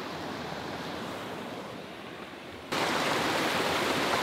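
Steady rush of a waterfall and its stream, stepping up suddenly louder and brighter about two-thirds of the way in.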